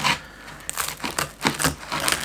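Kitchen scissors cutting through a very crisp, thin pizza crust: a quick run of irregular crunches and cracks.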